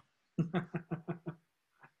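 A man laughing: a quick run of about six short "ha" bursts starting about half a second in and lasting about a second.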